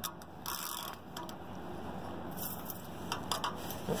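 Metal wrench clicking and scraping against the steel tensioning head and bolt of a mobile home tie-down strap, in scattered short clicks and brief scrapes as it is fitted and worked on the bolt.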